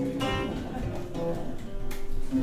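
Lute with extra bass strings played solo: chords strummed about a quarter-second in and again near the end, with plucked notes ringing between them.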